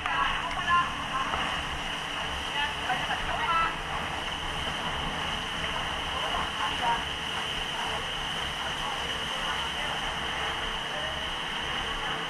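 Indistinct voices of people talking, mostly in the first few seconds, over a steady rushing noise.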